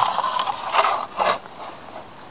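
Handling noise on the camera microphone: a few short scrapes and rustles in the first second and a half, then quieter.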